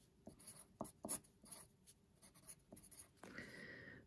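Pencil writing numbers on paper: faint, short strokes with small pauses between them.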